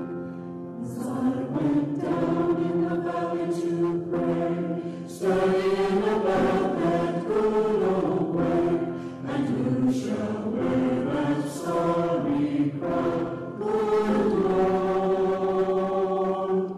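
Choir singing sacred music, voices holding long notes that change pitch from note to note.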